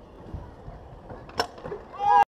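Faint outdoor background noise with low rumbling and a sharp click about one and a half seconds in.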